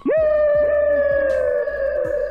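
A single long held note that swoops up sharply at the start, then holds and slowly sags in pitch.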